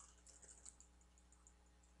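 Near silence: a low steady hum of room tone with a few faint clicks in the first second.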